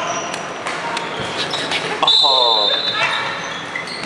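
Dodgeballs knocking on a wooden sports-hall floor and off players, several sharp knocks in the first second, echoing in the large hall. About two seconds in, a player's voice calls out.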